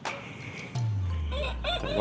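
A rooster crowing, over a low hum that slowly falls in pitch from just under a second in.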